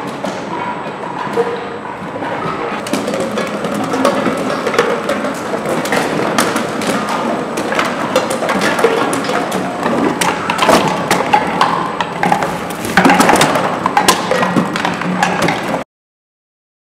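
Empty plastic bottles and cans clattering and knocking against one another and the machine as a beverage container counting machine carries them up its incline conveyor and across its sorting belts; the sound cuts off suddenly near the end.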